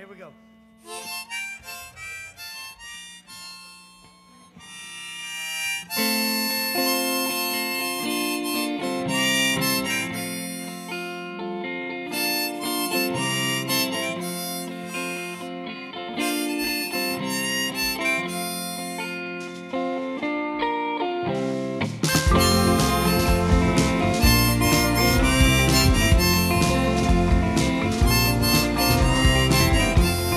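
Live instrumental intro on acoustic guitar and harmonica. Guitar picking starts alone, the harmonica joins about six seconds in, and the playing gets louder and fuller with a heavier low end about 22 seconds in.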